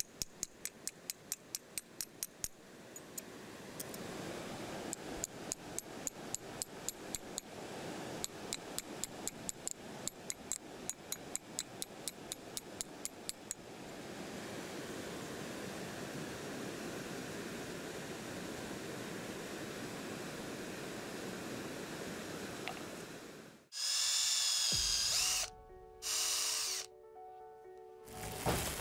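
A small hammer tapping a metal spoon-lure blank against a rock, with rapid, light, evenly spaced strikes about five a second, shaping the spoon. The taps give way to a steady rush of fast water, and near the end two short, loud bursts of a different, pitched sound break in.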